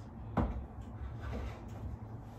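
A single sharp knock about half a second in: a stacked river-stone art piece set down on a wooden shelf. A low steady hum underneath.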